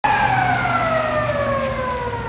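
Outdoor air raid siren sounding loudly, its tone sliding steadily down in pitch.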